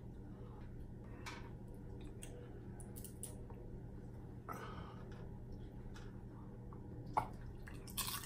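Quiet room tone with a steady low hum, broken by faint small clicks and taps from a plastic cup and plate being handled, and a brief hiss about halfway through.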